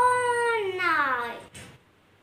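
A young girl's long drawn-out vocal 'aaah', held and then falling in pitch as it fades about a second and a half in, acted out as a waking-up yawn.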